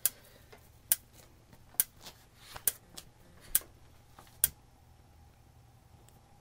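Gas range's oven spark igniter clicking as the oven knob is turned on: six sharp clicks a little under a second apart, stopping about four and a half seconds in.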